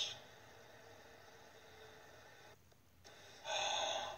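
Faint room tone, then near the end a sharp, breathy intake of breath: a gasp.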